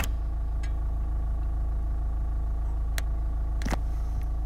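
Steady low rumble of a moving car heard from inside the cabin, engine and road noise together. A sharp click opens it, and a couple of fainter short clicks come about three seconds in.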